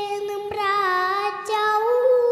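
A young girl singing solo into a microphone, holding long notes one after another.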